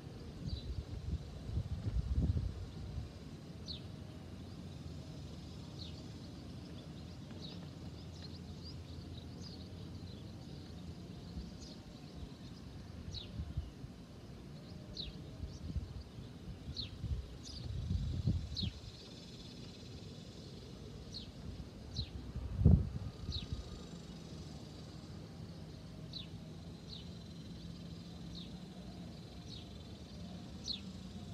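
Outdoor ambience with birds giving short high chirps now and then. A few low rumbles pass, and one sharp knock comes about two-thirds of the way through.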